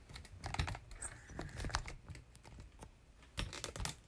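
Light clicks and taps from a smartphone being handled and repositioned close to its own microphone, with a quick run of clicks near the end.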